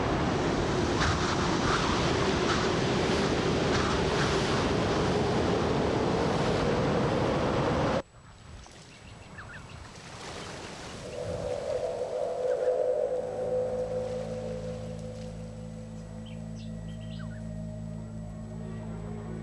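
Strong wind and rough sea noise, loud and steady, cutting off abruptly about eight seconds in. After that, a slow music drone fades in: a held mid-pitched note, then steady low tones beneath it.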